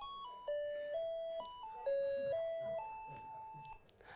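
A little melody of computer-synthesized square-wave beeps, a crude square wave like the sound of old sound chips: about nine stepped notes, one at a time, the last held longer and cutting off just before the end.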